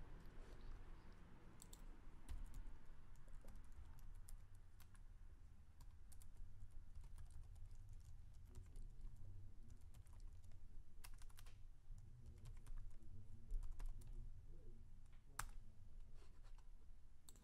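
Faint computer keyboard typing: scattered key clicks over a low steady hum as a command is typed, with a sharper click shortly before the end.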